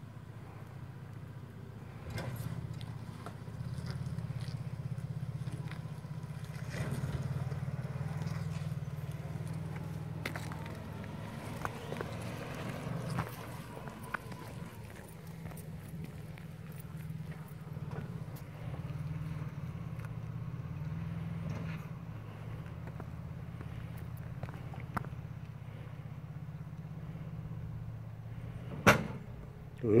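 Lifted pickup truck's engine running low and steady as it crawls down a steep granite slab in low-range four-wheel drive, with scattered light clicks and crunches of tyres on rock and a sharp knock just before the end.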